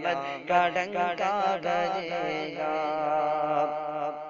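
A male voice singing an Urdu naat (devotional song in praise of the Prophet) in a wordless, ornamented run of bending phrases that settles into one long held note. Beneath it is a steady low drone.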